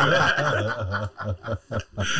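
Men laughing and chuckling at a joke; the laughter breaks into short, breathy pulses and dies away near the end.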